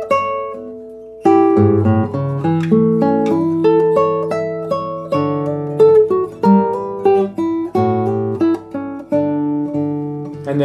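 Nylon-string classical guitar, fingerpicked, playing a slow, lyrical poco adagio passage in D major. A note rings and fades, there is a short pause about a second in, and then the playing carries on as a steady line of plucked notes over bass notes.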